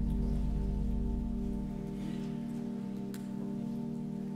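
Church organ playing sustained chords, the introduction to the psalm about to be sung. The deep bass notes drop out a little over a second in, leaving the upper chord held.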